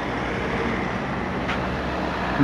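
Steady street traffic noise with a faint low engine hum.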